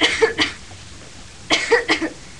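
A girl coughing, a persistent little cough in short pairs: two coughs at the start and two more about a second and a half in.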